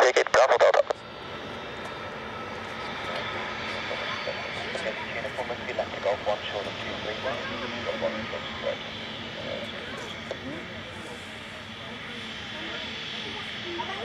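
Avro RJ100 jet airliner's four LF507 turbofan engines giving a steady whine at low power as it rolls slowly along the runway after landing. A burst of air-traffic-control radio speech comes over it in the first second.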